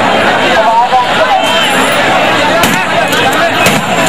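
A large crowd of men talking and shouting over one another, a dense, loud babble of voices with no single speaker standing out.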